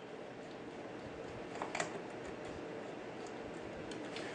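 A few faint clicks of a small screwdriver working the metal needle-plate screws of a sewing machine, two of them close together about a second and a half in, over steady room hiss.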